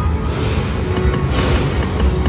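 Lightning Link Big Hot Flaming Pots video slot machine playing its game music and sounds while the reels spin, with a low rumble underneath.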